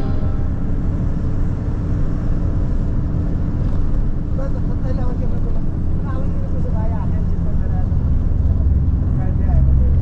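Inside a moving car's cabin: a steady low rumble of engine and road noise, with faint voices in the middle.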